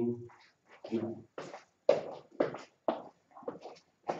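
Quiet, indistinct speech in a small room: short murmured syllables broken by brief pauses.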